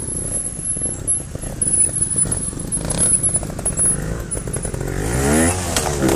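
Trials motorcycle engine running at low revs, then revving up sharply about five seconds in as the bike climbs onto a boulder close by.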